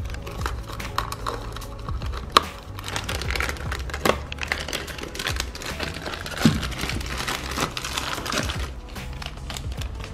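Thin plastic packaging bags crinkling as they are handled and cut open with scissors, with a few sharp clicks along the way, over background music.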